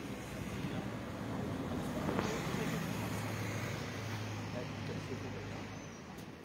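A motor vehicle's engine running close by, swelling about two seconds in and then holding a steady low hum, over street noise.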